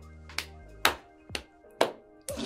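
Two people's hand claps alternating with fist-into-palm strikes in a steady rhythm, about two strikes a second, over quiet background music.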